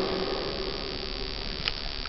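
A pause in the preaching: steady reverberant room tone of a large church as the last words die away, with a single short click late in the pause.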